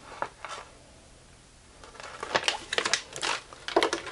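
Paper and plastic handling noise: a couple of soft paper rustles near the start, then a dense run of crinkles and sharp clicks over the last two seconds as the folded quick start guide and the plastic keypad switches are handled.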